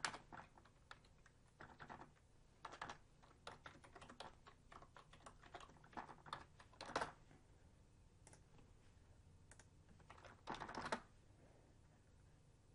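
Faint typing on a computer keyboard, a run of quick keystrokes entering a command. It pauses about seven seconds in, then a short final flurry of keys comes near the end.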